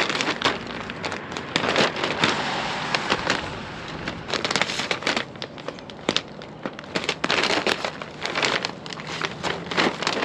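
Plastic film of a silage bag crackling and crinkling in irregular bursts as it is opened and peeled back by hand.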